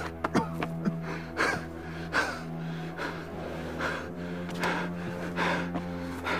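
A man's heavy, strained gasps and sobbing breaths, repeating under a second apart, over a low sustained music drone.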